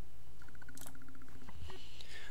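A steady low hum, with a faint, quick run of ticks about half a second in and a few soft clicks.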